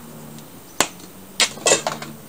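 Spice jars being handled while seasoning: one sharp click about a second in, followed by a few short, dry rattling and scraping sounds.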